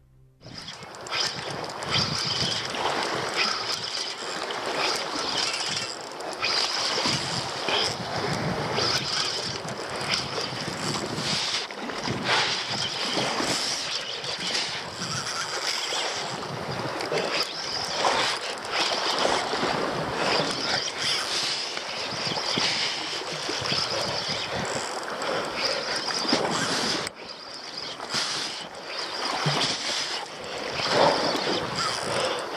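Wind buffeting the microphone over sea surf washing on rocks below: a steady rushing noise that swells and drops in gusts.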